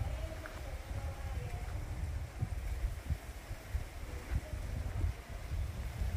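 Wind buffeting the camera microphone outdoors: an uneven, gusting low rumble.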